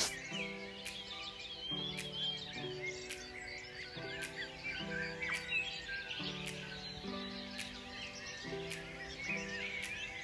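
Dawn chorus: many birds chirping and calling at once in a dense, continuous tangle of short songs. Quiet background music with held chords runs underneath.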